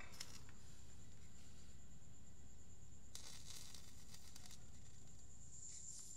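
Electric fan running quietly and steadily, with a brief soft rustle of handling around the middle.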